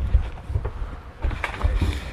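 Knocks and rustles of fishing gear being handled on a wooden boat deck, a cluster of them in the second half, over an irregular low rumble of wind buffeting the microphone.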